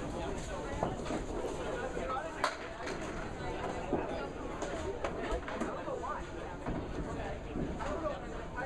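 Candlepin bowling alley ambience: low background chatter of players and spectators, with scattered knocks and clatter from balls and pins. The sharpest knock comes about two and a half seconds in.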